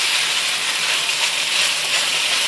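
Sliced beef sizzling in a hot oiled wok as it starts to sear: a loud, steady sizzle that began the moment the meat hit the pan.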